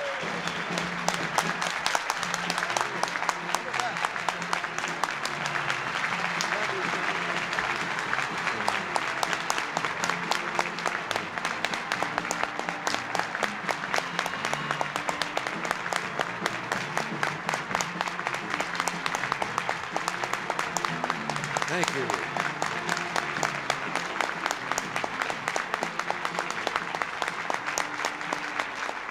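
A large audience clapping steadily, with music playing underneath.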